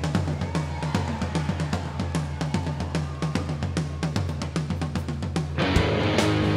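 Rock drum kit played solo as a song intro: a steady, even pattern of drum strokes with a low steady tone beneath. An electric guitar comes in just before the end.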